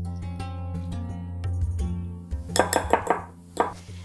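Background music, with a quick run of clinks about two and a half seconds in from a wire whisk striking the side of a glass bowl of batter.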